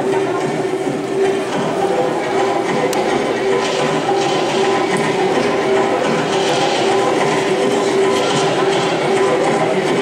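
Loud, steady din of a sports hall picked up by a camcorder microphone, with a steady hum running through it.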